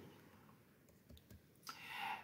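Near silence: room tone, with two faint short clicks a little over a second in and a soft breath near the end.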